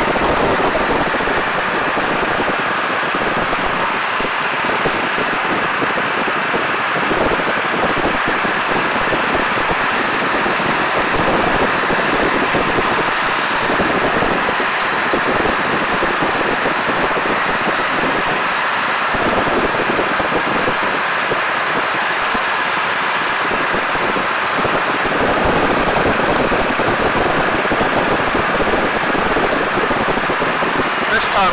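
Loud, steady rush of slipstream wind and engine noise from a biplane in flight, heard by a camera mounted on the top wing, with no pauses or changes.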